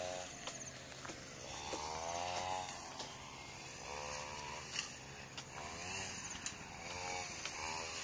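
Small engine heard faintly, revving up and falling back about four times over a steady low hum.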